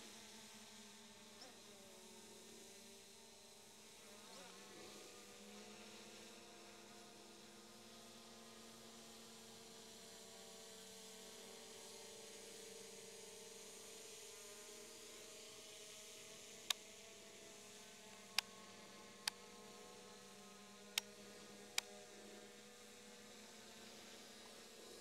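Faint, steady buzz of a Ruko F11GIM2 quadcopter drone's propellers high overhead, its pitch drifting slowly as it circles in point-of-interest mode. Five sharp clicks come close together in the second half.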